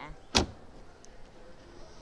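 A single sharp knock of a small storage-compartment lid on a bass boat being shut, about a third of a second in.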